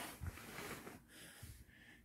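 A quiet pause: faint room noise with no clear sound event.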